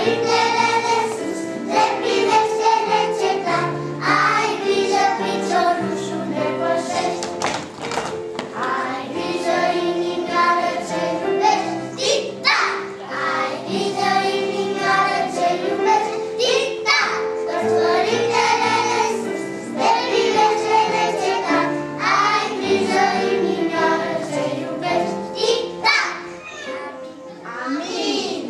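A group of young children singing a song together in unison, with musical accompaniment underneath and steady held low notes.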